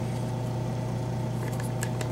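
A steady low hum with faint overtones, and a few soft clicks near the end as a plastic zip tie is fed around a threaded rod.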